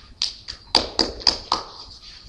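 A few hand claps, about six, roughly a quarter second apart, from one or two listeners: brief, sparse applause after a poem.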